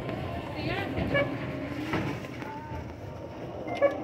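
Supermarket ambience: a steady low rumble with faint, indistinct voices in the background.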